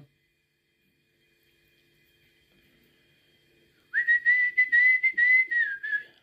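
Whistling: one held, slightly wavering high note comes in about four seconds in and runs on with small breaks, after a few seconds of near silence.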